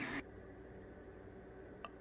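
Faint, even room tone with a low hum. At the very start a steady whine from the running 3D printers cuts off abruptly, and a single small click comes near the end.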